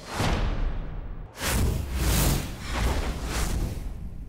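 Broadcast graphics transition: a whoosh, a second rising rush about a second in, then a short music bumper with a heavy, steady beat.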